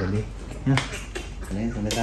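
A man's low voice, sounding in short held phrases, with a few sharp clicks in between.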